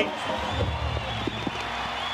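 Stadium crowd cheering and applauding as a home try is awarded, with a thin high whistle held over the noise.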